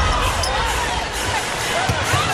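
Live basketball court sound: a ball being dribbled on a hardwood floor and several short sneaker squeaks, over arena crowd noise and music.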